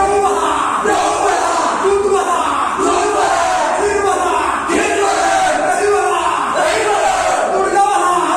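A group of male voices chanting and shouting together, a short call repeated over and over in a steady rhythm as they dance.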